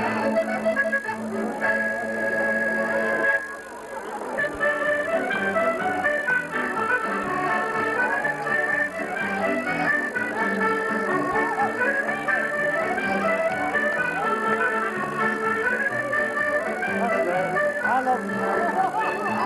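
Live band with accordion playing a quick tune through a PA. A long held note cuts off about three seconds in, and after a short gap the rapid run of notes picks up again.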